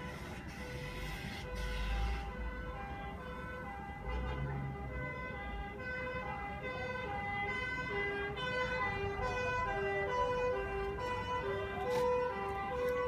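Fire engine sirens sounding a rapid two-tone hi-lo, switching between two pitches a few times a second. From the middle on, a second two-tone siren at a slightly lower pitch overlaps the first, and near the end a rising wail comes in over a low engine rumble.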